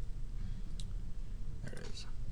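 A single computer mouse click about a second in, over a steady low room hum, followed near the end by a brief murmur of a voice.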